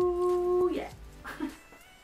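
A woman's voice holding a sung 'ooh' note, which breaks off under a second in, followed by a few soft breathy sounds.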